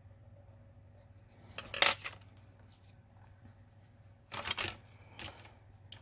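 Paper mask lifted off a card and set aside, with craft tools handled on a cutting mat: a sharp papery rustle about two seconds in, another cluster of rustles a little past four seconds, and a smaller one just after.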